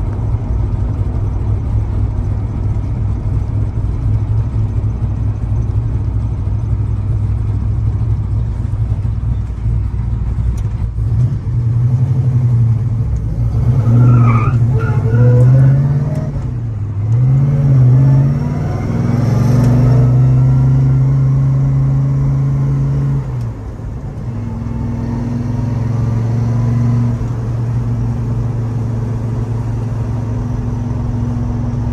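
Big-block V8 of a 1970 Chevrolet Chevelle SS, heard from inside the cabin. It cruises at a steady low rumble, then revs up under acceleration from about twelve seconds in. The pitch falls and climbs again at each manual gear change before settling back to a steady cruise.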